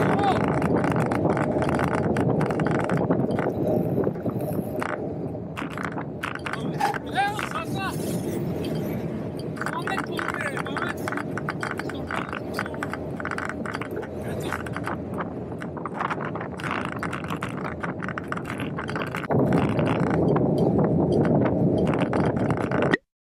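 Wind rushing over the microphone of a bicycle-mounted action camera while riding along a road, with tyre and traffic noise underneath. It is louder for the first few seconds and again near the end.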